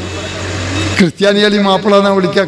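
About a second of steady rumbling noise from a passing motor vehicle. Then a man speaking Malayalam into a microphone resumes.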